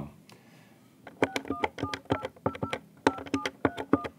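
Keypad of an Avaya 1416 desk phone being dialed: a quick run of key presses, each giving a short dual-pitch touch-tone beep, in three rapid groups as a ten-digit outside number is entered. The tones start about a second in.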